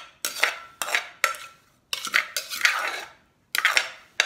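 Spoon scraping around the inside of an earthenware mortar, scooping out pounded long-bean salad in a run of short scrapes with brief pauses between them.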